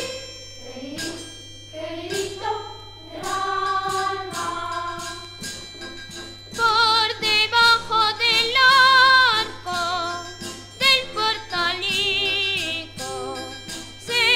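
Boys' choir singing a Spanish Christmas villancico with rhythmic percussion, softer at first and then fuller, with vibrato, from about a third of the way in.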